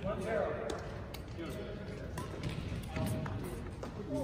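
Badminton hall ambience: background voices and music, with a few scattered sharp taps from play on the court.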